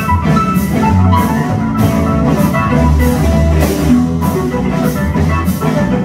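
Live blues-rock band playing: electric guitars and bass over a drum kit keeping a steady beat.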